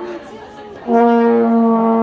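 A beginner blowing one steady held note on a euphonium-type brass horn. The note is weak at first, then comes in full and loud about a second in.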